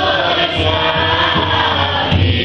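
Children's choir singing, the voices holding long notes.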